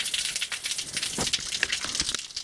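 Outdoor shower running: a steady hiss of water spraying from the shower head and spattering below.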